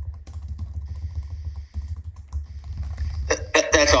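Rapid, irregular clicks of typing on a computer keyboard over a steady low hum, picked up through a call participant's microphone. A voice comes in near the end.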